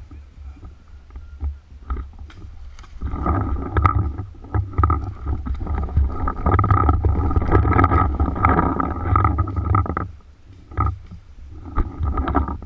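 Rumbling wind and handling noise on a body-worn action camera's microphone as the wearer moves, with scattered clicks and knocks. It grows loud about three seconds in and drops back near ten seconds.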